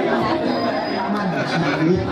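Chatter of several people talking at once, with no single clear voice.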